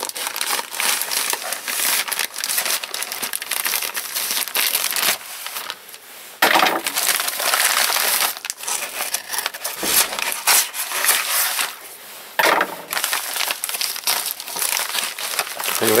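Scissors cutting open a plastic courier mailer bag, then the plastic and a padded paper envelope crinkling and rustling as they are handled and pulled apart, with louder crinkles about six and a half and twelve and a half seconds in.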